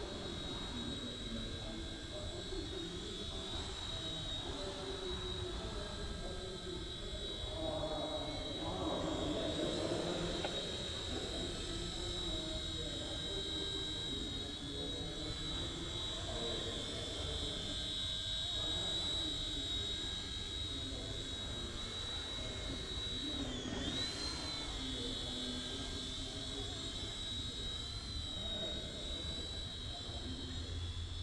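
Eachine E129 micro RC helicopter's electric motor and rotors whining steadily at a high pitch. The pitch dips briefly and recovers about 24 seconds in.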